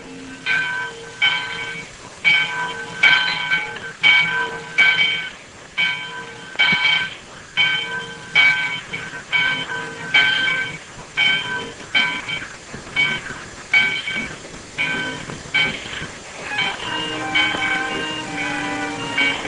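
Steam train passing slowly close by, with a rhythmic ringing clang repeating about twice a second. Near the end, other held tones join in.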